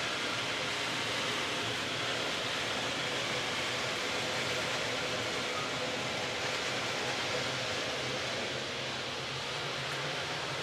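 Steady hiss of background noise with a faint low hum underneath, unchanging throughout, with no distinct events.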